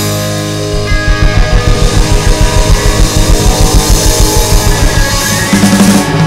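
Live rock power trio playing loud, with electric guitar, bass guitar and drum kit and no vocals. From about a second in, the low end drives a fast, even pulse of about five beats a second.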